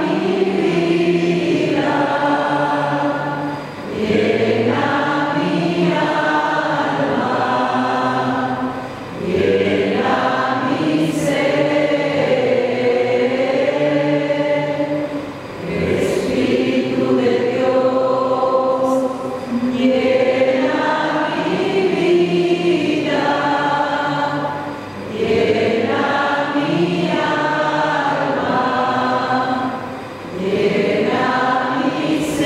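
Slow congregational worship song sung by a group of voices, in long held phrases of about four to five seconds, each followed by a brief break.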